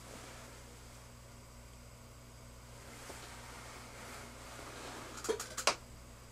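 Quiet workshop room tone with a steady low hum and faint handling rustle, then a quick cluster of light clicks and taps near the end as small objects are handled on the workbench by the arbor press.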